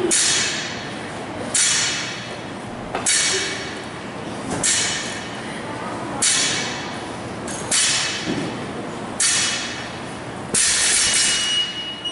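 A barbell loaded with bumper plates touching down on the rubber gym floor in repeated deadlift reps, about every second and a half, eight times. Each touch gives a sharp clank followed by a rattle of plates that dies away. Near the end a steady high electronic beep from a workout timer starts, marking the end of the time cap.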